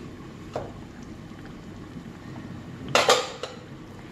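Aluminium pot lid handled over a pan of simmering sambar, with a faint click about half a second in and a loud metallic clatter about three seconds in as the lid is set down, over a steady low background hiss.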